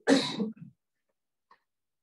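A person's single short throat-clearing cough, lasting about half a second.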